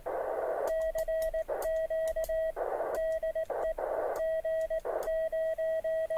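Morse code (CW) on 40 m from a 3-watt Mountain Topper QRP transceiver: a single steady beep keyed on and off in dots and dashes, with short bursts of receiver hiss in the longer gaps.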